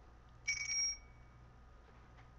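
A short electronic alert chime: one bright, steady high tone that starts with a click about half a second in and lasts about half a second.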